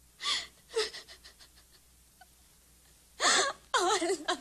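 A young woman sobbing: two sharp gasping breaths near the start, then a loud gasp and a wavering, quavering cry near the end.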